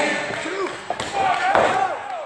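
Wrestlers' strikes landing in a ring corner: a few sharp smacks in the second half, the loudest about a second and a half in, over shouting voices.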